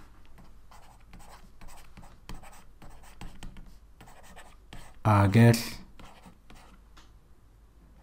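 Pen writing by hand: faint, quick scratchy strokes with brief pauses between letters. One short spoken word breaks in about five seconds in.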